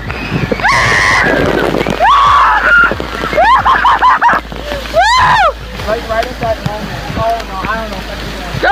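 Water spraying and splashing over a water-park play structure, with a rush of water strongest in the first couple of seconds, mixed with many short shouts and shrieks of people.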